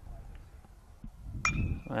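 A metal baseball bat strikes the ball once, about one and a half seconds in: a sharp crack followed by a short ringing ping.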